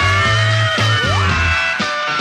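A mid-1960s rock and R&B band recording plays, with a bass line and drums under long held high notes.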